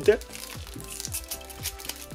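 A foil trading-card pack crinkling as it is cut open with a metal snap-off utility knife, over steady background music.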